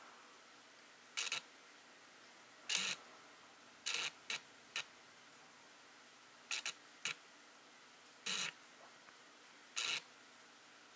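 Camera shutter clicking about nine times at irregular intervals, some as quick double clicks, over a faint steady hiss.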